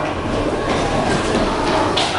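Steady din of many voices blurred together in a large, echoing room, with low handling noise from the camera.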